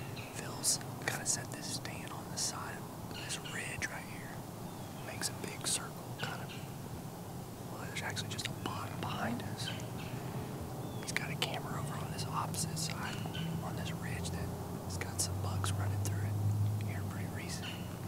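A man whispering in short hushed phrases, with a low rumble building in the background during the second half.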